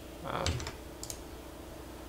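A couple of faint clicks at the computer, about a second in, over low room tone.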